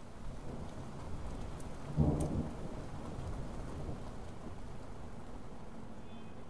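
Rain falling steadily, with a low rumble of thunder about two seconds in.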